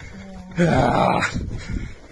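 A man's wordless, rough groan lasting under a second, starting about half a second in.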